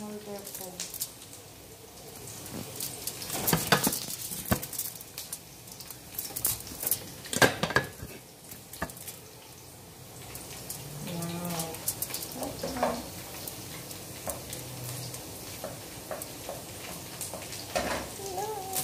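Hot oil sizzling in a wok on a gas stove, with sharp knocks and clatter of utensils against the pan, the loudest about four and seven seconds in.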